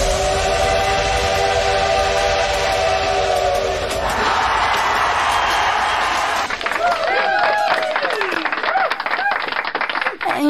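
A break in an electronic dance track: a steam-train whistle is held for about four seconds, then a hiss of steam, then swooping, sliding voice-like sounds.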